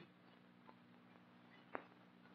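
Near silence: a faint steady hum, broken by two faint clicks about a second apart.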